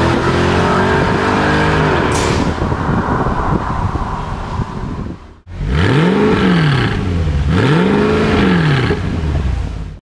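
Mercedes-Benz CLK63 AMG Black Series 6.2-litre V8 accelerating away, its pitch climbing with a shift about two seconds in, then fading until it cuts off suddenly about five seconds in. After the cut an engine is revved twice, each rev climbing and falling back.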